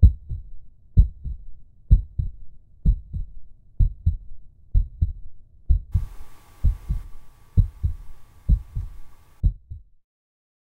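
Heartbeat sound effect: a steady double thump, just under one beat a second. From about six seconds in, a faint hiss with a thin steady tone joins it, and both stop just before the end.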